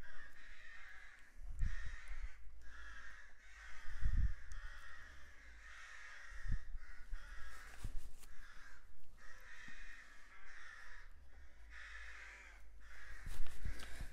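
Birds calling over and over, a run of calls each about a second long with short breaks between them, with a few dull low thumps at intervals.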